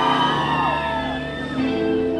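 Live pop band starting a song: held keyboard chords over a steady low note, with a new chord coming in near the end. Crowd shouts and whoops trail off in the first second.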